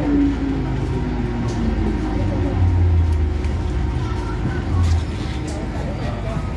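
MTR M-Train metro car's traction motors whining downward in pitch as the train slows into the station, the whine fading out within the first second and a half. Then a low running rumble of the car, with a deeper hum swelling briefly twice.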